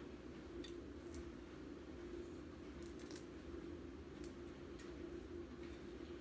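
Faint clicking and rustling of plastic adhesive rhinestone wrap being pressed onto a glass cylinder as it is turned, over a steady low room hum.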